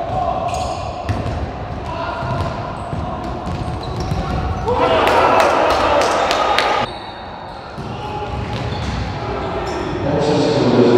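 Echoing sports-hall sound of a futsal game: the ball being kicked and bouncing on the hard court as sharp knocks, and players' shouts. A louder burst of shouting starts about five seconds in and cuts off abruptly near seven seconds.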